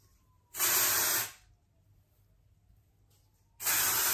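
Aerosol can of Klorane dry shampoo sprayed onto the hair roots in two short hissing bursts, each under a second long, about three seconds apart.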